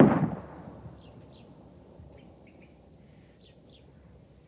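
A single loud bang at the very start that dies away over about a second, followed by faint bird chirps over a low background.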